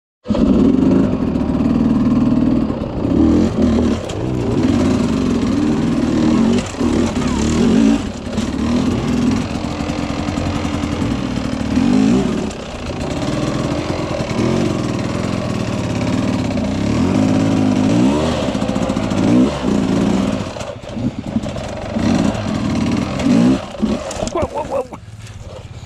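Dirt bike engine running hard, its revs rising and falling over and over as it picks its way up a rocky trail.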